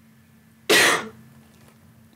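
A single short cough about two-thirds of a second in, over a faint steady hum.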